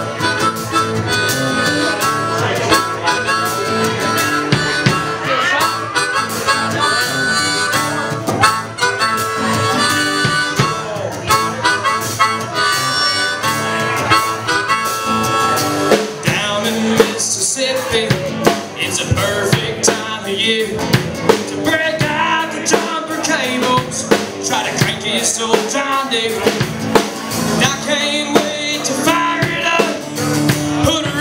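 Live band playing an instrumental break: a harmonica solo over strummed acoustic guitar and a drum kit.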